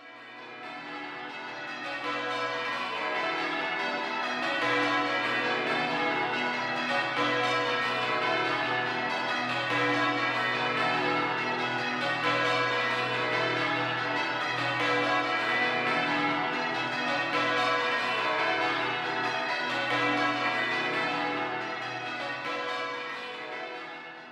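The ring of twelve church bells of St Mary Redcliffe (tenor about 50 cwt, in B) rung full-circle in changes, strikes following one another in a steady rhythm. The ringing fades in over the first few seconds and fades out near the end.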